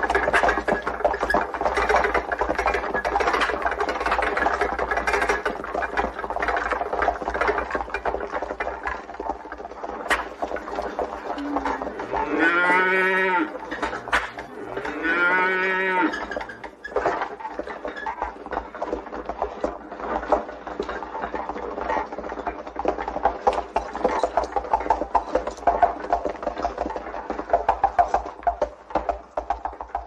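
Draught oxen lowing: two long calls, each about a second and a half, rising and falling in pitch, roughly 12 and 15 seconds in. Under them runs a continuous busy clatter with many overlapping steady tones.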